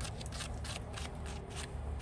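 Work gloves brushing the spines off a ripe yellow dragon fruit: a quick run of dry, scratchy strokes, about four or five a second.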